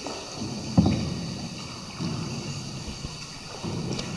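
Tour boat being paddled along a cave river: low water swishes from the paddle strokes come about every second and a half, with a sharp knock about a second in.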